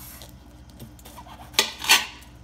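A kitchen knife slicing down through the side of a bell pepper, mostly quiet at first, then near the end a rasping scrape of about half a second as the blade cuts through and strikes the hard cutting board.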